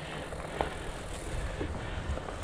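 Mountain bike rolling along a dirt trail covered in dry leaves: a steady rolling rush of tyres over leaves, with a few light knocks and rattles.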